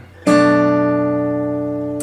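Steel-string acoustic guitar sounding a B minor 7 barre chord at the second fret, struck once about a quarter second in and left to ring, fading slowly.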